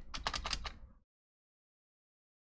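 Quick burst of typing on a computer keyboard, about seven keystrokes in the first second.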